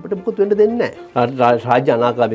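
A man speaking Sinhala in conversation, with a low, drawn-out vowel about half a second in.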